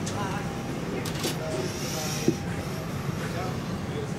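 Steady low hum of a parked airliner's cabin, with faint voices in the background and one sharp click a little after two seconds in.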